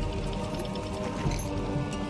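Online slot game's background music playing steadily while its bonus wheel spins.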